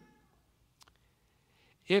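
Near silence in a pause between a man's spoken sentences. His voice trails off at the start, a single faint click comes about a second in, and his next word begins at the very end.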